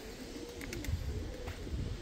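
Domestic pigeons cooing softly, a low wavering coo.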